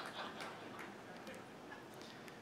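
The tail of audience laughter fading into the quiet of a large room, with faint scattered small ticks and clicks.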